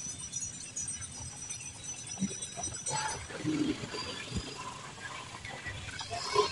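Outdoor street ambience: a steady background hiss with scattered indistinct sounds and a short low thump about four and a half seconds in.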